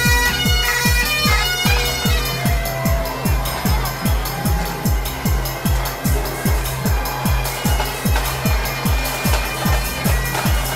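Highland bagpipes of a pipe band playing over a steady electronic dance beat for the first few seconds. The piping fades out about three seconds in, leaving the electronic dance music with its regular kick drum.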